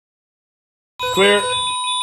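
Silence, then about halfway through a sudden electronic alarm-like ringing of several steady high tones, with a short pitched warble under it at the start.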